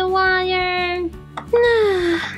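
A high-pitched, childlike voice holds one long sung note, then slides down on a second note about halfway through. Background music plays under it.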